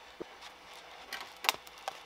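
Faint clicks and ticks of PETG filament being worked out of a 3D printer's extruder by hand, the sharpest about one and a half seconds in. A faint steady hum runs underneath.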